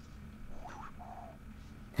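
A faint, failed attempt at a Western-style whistle: a brief rising sound, then a short low steady note, with no clear whistle tone. The whistle won't come because the whistler has a dip of chewing tobacco in his lip.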